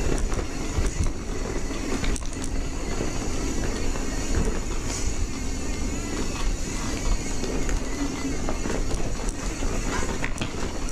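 Electric mountain bike ridden over rough singletrack: a steady rumble of tyres and wind on the bike-mounted microphone, with the bike rattling and a few sharp knocks as it rolls over rocks and roots.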